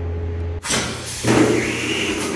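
Pneumatic screen printing machine starting its auto print cycle. Compressed air rushes out suddenly just over half a second in as the air cylinder drives the print head down onto the print table, and it gets louder about a second in as the head comes down.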